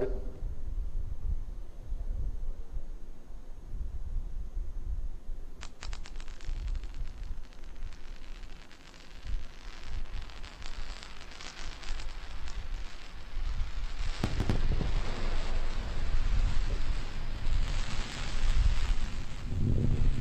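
Falcon 9 first stage's single Merlin 1D engine firing its landing burn, slowing the booster for touchdown. A low rumble, joined about six seconds in by a crackling roar that grows louder through the second half.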